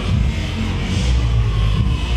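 Music with a heavy, steady bass playing over an arena sound system.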